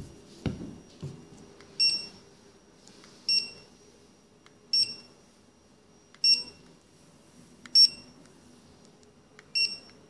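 Generalscan M500BT-DPM handheld wireless barcode scanner beeping six times, a short high beep about every second and a half, each the scanner's signal of a successful code read. A low thump comes about half a second in.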